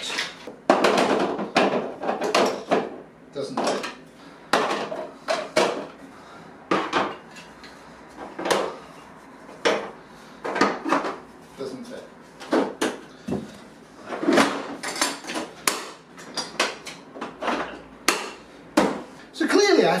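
Hand tools, among them wooden-handled paintbrushes, clattering and knocking against the hard plastic compartments of a Husky Connect toolbox organizer as they are packed in: irregular clusters of sharp knocks with short pauses between.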